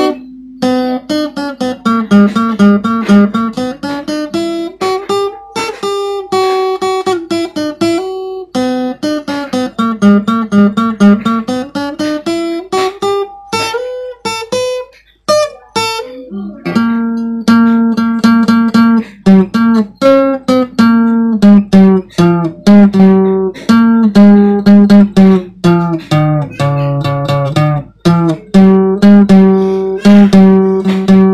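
Solo acoustic guitar playing an instrumental passage: plucked melodic runs that rise and fall in the first half, a short break about halfway, then steady repeated picked chords.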